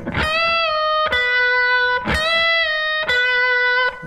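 Electric guitar playing four single picked notes, about one a second, alternating between a higher and a lower note; the first note is bent upward and held.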